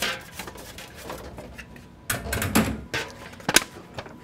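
Kitchenware being handled on a counter: scattered knocks and clatter, a louder rattle about two seconds in, and a sharp click shortly before the end.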